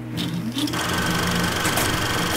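Film projector sound effect: a motor that spins up, rising in pitch over the first half second or so, then runs on as a steady mechanical clatter with a thin whine above it.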